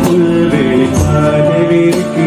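Live Tamil folk-band music: a man sings long held notes over violin and band accompaniment, with a percussion stroke about once a second.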